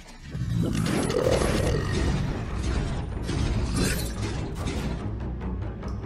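Soundtrack music mixed with mechanical sound effects for a moving toy robot: a dense run of small clicks and clanks over a steady low rumble, with a swell about a second in.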